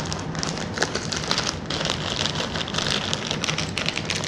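Handling noise on the GoPro's microphone: steady crackling and rubbing with many small clicks as the camera and its mount are fiddled with by hand.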